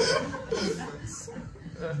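Soft chuckling and laughter from people in the room, loudest at the start and fading away.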